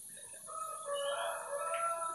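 A rooster crowing faintly in the background, one long drawn-out call beginning about half a second in.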